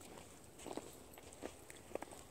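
A few faint, soft crunches of footsteps in fresh snow.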